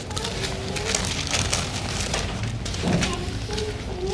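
Bible pages being leafed through: a steady crackly rustling of paper.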